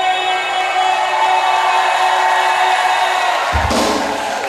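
Live pop-rock band with female lead vocal, bass, guitar, keyboards and drums. A held note fades into a cymbal-like wash, then the drums and bass come back in loudly about three and a half seconds in.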